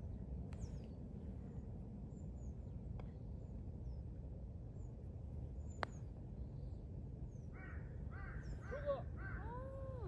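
A putter strikes a golf ball once, a single sharp click about halfway through. From about three-quarters of the way in, a crow caws repeatedly.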